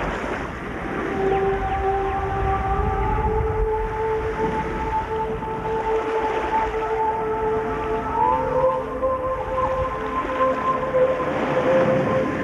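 Ambient show music: a wash of ocean-surf sound swelling and fading every few seconds, under long held tones that come in about a second in and slowly glide upward in pitch, like whale song.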